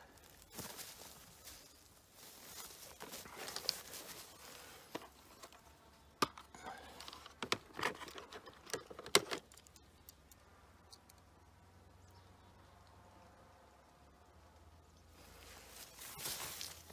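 Hands working a cut ballistic gel block on a wooden stand: faint scattered clicks, taps and soft rubs over the first half, then near-quiet background.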